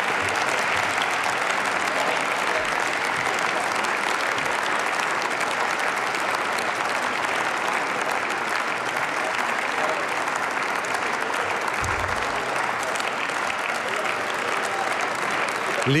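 Long, steady applause from a full parliament chamber, members of parliament clapping in a standing ovation.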